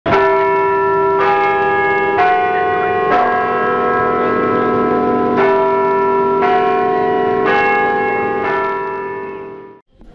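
Church bells ringing, about eight strokes on different notes, each ringing on under the next. The sound fades out just before the end.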